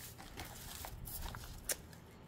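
Faint rustling of paper crinkle shred and a paper craft basket being handled, with a couple of light clicks about a second in and near the end.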